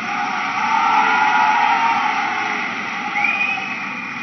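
Large crowd applauding: an even wash of clapping that swells in the first second and then slowly dies down.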